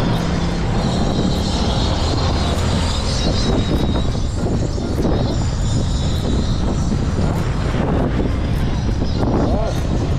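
Steady engine and road noise of a vehicle driving through city traffic, a continuous low rumble with no breaks.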